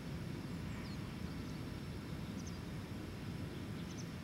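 Outdoor ambience: a steady low rumble with a few faint, brief high bird chirps.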